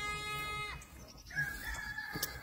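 A rooster crowing, its steady call ending under a second in, followed by a second, higher-pitched crow that starts a little past the middle and is held.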